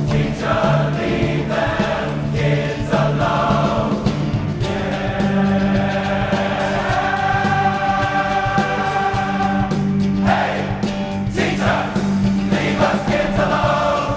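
Large men's chorus singing a rock number over band accompaniment with a steady beat. The voices hold one long chord through the middle, with shorter sung phrases before and after it.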